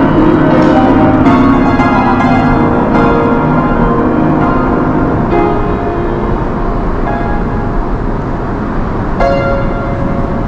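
Piano chords struck slowly and left to ring, each one fading into the next, growing sparser toward the end.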